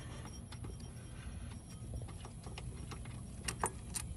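Light metallic clicks and clinks from a loosened power steering pump and its bolts being worked under the hood, with a few sharper clicks a little after three and a half seconds in.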